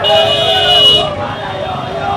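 A vehicle horn sounding once, held for about a second, over people's voices.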